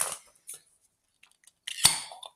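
A crisp packet rustling as it is handled, dying away within the first half-second, then a single sharp clink of a hard object being knocked or set down near the end.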